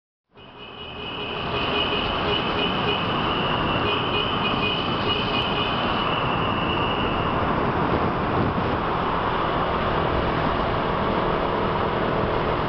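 Steady traffic noise inside a road tunnel, fading in over the first second or so. A thin high whine rides over it and stops about seven seconds in.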